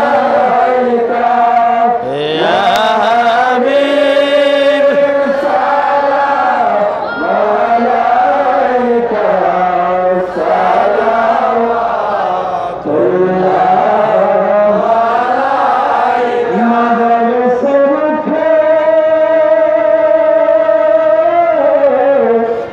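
A man's voice chanting an Islamic devotional chant through a microphone, in long held notes that slide up and down, with brief breaths between phrases.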